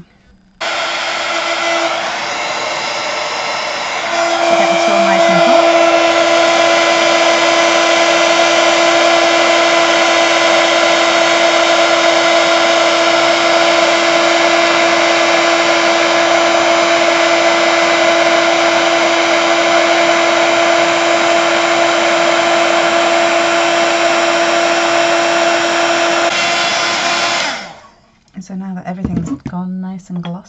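Handheld craft heat gun blowing steadily as it melts embossing powder on a card. About four seconds in it gets louder with a steady hum added, and it switches off about two seconds before the end.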